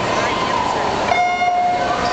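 Electronic starting horn of a swim race sounding one steady beep, a little under a second long, the start signal that sends the swimmers off the blocks, over crowd chatter.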